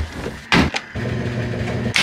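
Sheets being loaded into a front-loading washing machine: a loud thump about half a second in, then a steady low mechanical hum for about a second, ending in a sharp click.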